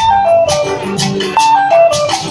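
Live band music: a melody of short held notes that steps downward, twice, over a beat struck about twice a second.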